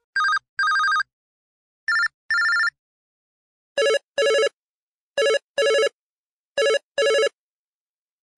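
LG KS360 mobile phone ringtone: an electronic double ring, a short beep then a longer one, repeated five times about every 1.4 seconds. The first two pairs are higher in pitch than the last three.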